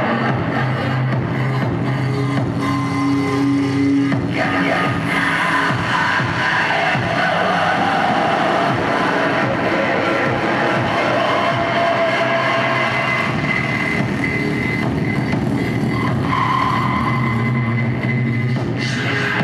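Live harsh-noise electronics from a table of effects pedals and a mixer: a loud, continuous wall of distorted noise with held, drifting feedback tones over it. A low hum drops out about four seconds in and comes back near the end.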